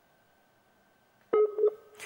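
A breaking remote video-call audio link: near silence with a faint steady high tone, then two short, loud beep-like blips about a second and a half in.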